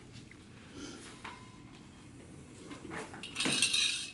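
A metal spoon scraping and clinking in a ceramic bowl of salt and copper carbonate mixture, loudest near the end, with a faint clink about a second in.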